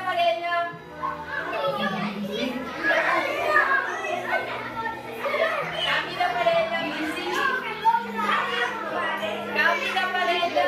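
A roomful of young children chattering and shouting together as they dance, with music playing underneath.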